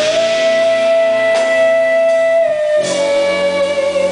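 Live jazz-funk band of voice, electric guitar, electric bass and drums playing; a long high note is held for about two and a half seconds, then steps down a little and is held again over the bass.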